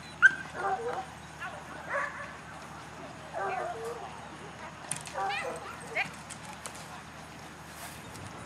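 A dog barking and yipping several times, short calls spaced out over a few seconds, as it runs an agility course.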